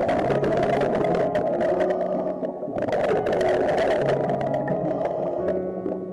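Scuba diver's exhaled bubbles rushing and crackling past an underwater camera, two long exhalations with a short pause between them, over background music with held notes.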